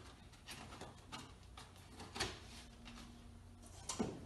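Faint, scattered light taps and scrapes of a cardboard-framed air filter being pushed into the slot of a hinged wall return-air grille.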